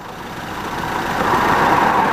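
A car driving along the road toward the listener, its tyre and engine noise swelling steadily as it approaches.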